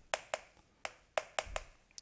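Chalk clicking and tapping against a chalkboard during handwriting strokes: about eight sharp, irregularly spaced taps.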